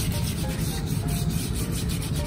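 Hand scrub brush scrubbing a wet concrete floor in rapid back-and-forth strokes, about four or five a second, scouring off moss.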